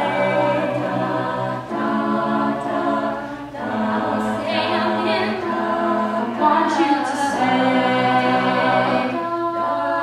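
Mixed-voice a cappella group singing live: the backing voices hold sustained chords that change every couple of seconds, under a female lead singer on a microphone.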